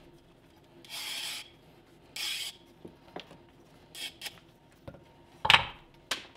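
Veg-tan leather strap being drawn through a wooden strap cutter's blade, slicing a thin strip off its edge with a short scraping sound on each pull. Four pulls, the last one sharper and louder.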